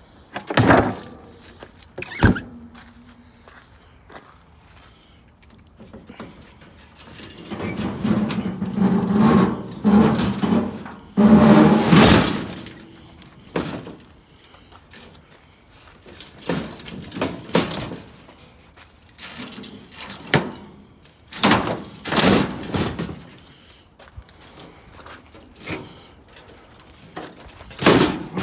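Junk appliances and scrap metal being thrown down and handled: hollow thunks and knocks, with a stretch of scraping and squealing in the middle as a metal air-conditioner condenser unit is shifted across a truck bed.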